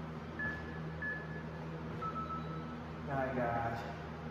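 Interval workout timer beeping at the end of a work period: two short high beeps, then one longer, lower beep. A man's voice is heard briefly near the end.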